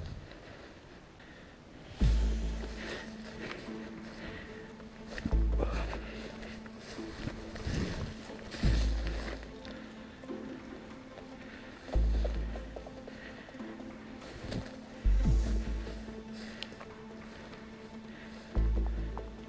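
Background music: a held note with a deep bass hit about every three seconds, each hit fading away.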